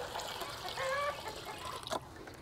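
Water trickling from a tipped bucket into a shallow pan, with one short chicken call about a second in.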